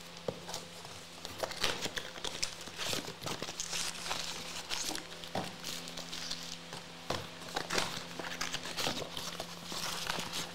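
Foil trading-card packs crinkling and rustling as they are handled, with irregular small crackles and clicks.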